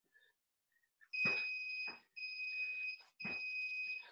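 Workout interval timer sounding its end-of-round signal: three long, steady, high-pitched beeps, each just under a second, one after another, starting about a second in.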